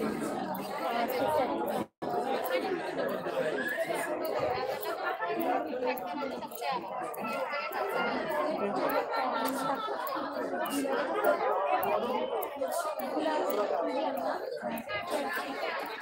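Many people talking at once in a large indoor hall: steady crowd chatter with no single voice standing out. The sound cuts out for an instant about two seconds in.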